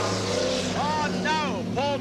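Engines of several speedway saloon cars racing together, a steady drone, with a man's voice over it in the second half.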